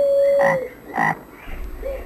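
Frogs croaking: a long steady call, then two short croaks about half a second and a second in.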